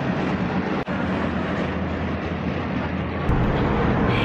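Steady rushing road and wind noise of a moving car, heard from inside the cabin with a window open. The low rumble changes about three seconds in.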